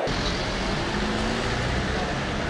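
Road traffic: a steady rumble of vehicle engines, with no single event standing out.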